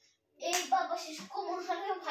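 A child's voice making wordless sounds, with light taps of a plastic toy hammer on a rug, starting about half a second in.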